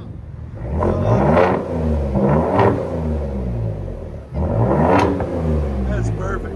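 2021 Ford F-150's 3.5 L EcoBoost twin-turbo V6, exhausting through an X-pipe and straight-piped duals, free-revving three times, each rev rising and falling in pitch. The first two come close together; the third starts sharply about four seconds in.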